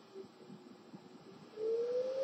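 Quiet room tone, then about one and a half seconds in a thin whistle-like tone that slowly rises in pitch.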